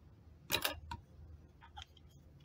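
Sharp plastic clicks from a small resin bottle being handled: a quick double click about half a second in, a lighter click just after, then a couple of faint ticks near the end.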